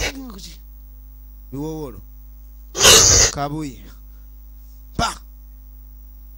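A person's gasps and short strained vocal cries in several separate bursts, the loudest about three seconds in, over a steady electrical mains hum.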